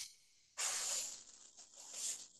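Breathy hissing noise: a short burst at the start, a longer stretch from about half a second in that fades, and another near the end.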